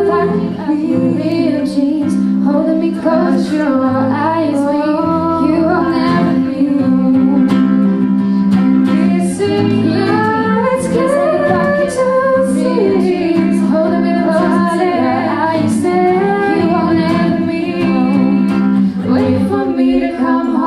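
Live song performance: a female voice singing into a microphone over a strummed acoustic guitar.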